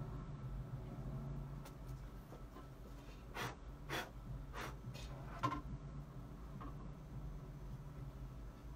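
Steady low hum from the playback system, with a handful of soft, irregular clicks in the middle, while a vinyl LP is readied on a record player.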